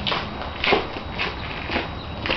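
Footsteps on a brick-paved driveway, about two steps a second, over a low steady hum.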